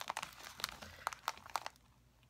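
A clear plastic pocket-page sleeve crinkling and crackling as it is handled: a run of small, quick crackles that thins out near the end.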